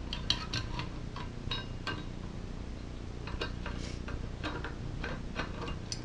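Light, irregular metallic clicks and taps as the engine brake's metal parts are worked into place by hand on the small engine, over a steady low background hum.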